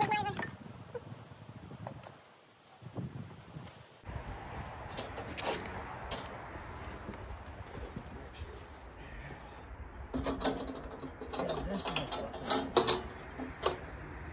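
A short laugh, then scattered light clicks and knocks of handling with low voices, over a steady low hum that sets in about four seconds in.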